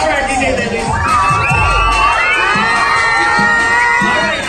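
A crowd of children shouting and cheering together. From about a second in, many high voices are held at once over one another.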